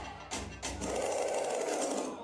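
Sound-system music being cut off: the heavy bass dies away, followed by two short clicks and about a second of buzzing rattle from the decks.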